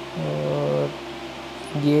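A man's voice: a drawn-out hesitation sound held at one pitch for under a second, then a short word near the end, over a steady low electrical hum.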